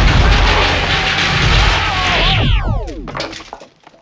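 Proton-pack streams firing (film sound effect): a loud, crackling electrical blast with a wavering whine through it, as the streams smash into a housekeeping cart. About two and a half seconds in, the streams cut off in several falling whistles, and the sound dies away before the end.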